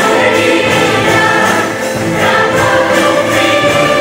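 A choir singing gospel music with band accompaniment.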